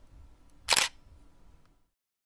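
A single camera shutter sound effect: one short click about three-quarters of a second in.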